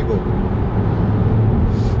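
Steady low rumble of road and engine noise inside the cabin of a Range Rover Evoque with the 2.0 Ingenium diesel, on the move.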